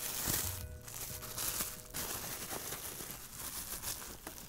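Plastic bubble wrap crinkling and rustling irregularly as it is pulled open by hand.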